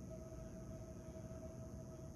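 Faint room tone in a pause between spoken phrases: a steady low rumble with a faint, steady hum.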